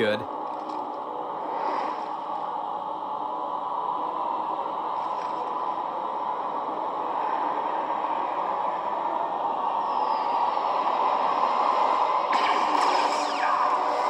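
A fan film's soundtrack playing back into the room: a dense, steady sound that swells gradually louder, with sharper, higher effects coming in about twelve seconds in.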